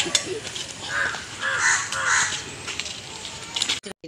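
A bird calling three times in quick succession, the calls about half a second apart, with a couple of sharp knocks right at the start.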